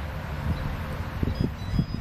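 Wind buffeting a handheld microphone: a low, gusty rumble, with several stronger puffs in the second half.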